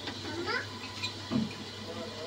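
A domestic cat meowing, two short meows: a rising one about half a second in and a lower one just past a second.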